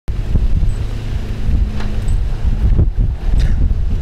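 Wind buffeting a camera microphone: a loud, uneven low rumble, with a faint steady hum under it that stops about halfway through.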